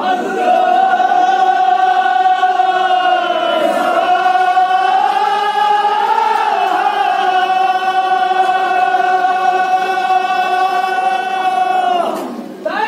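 Men's voices chanting together, holding one long drawn-out note with a short break about four seconds in and a slight rise in pitch around six seconds.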